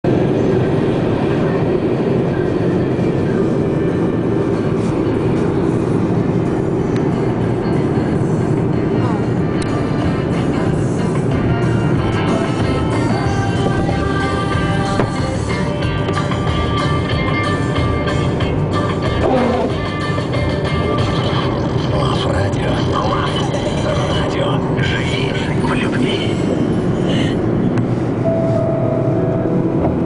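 Music with singing playing over the steady rumble of a car driving along a city road.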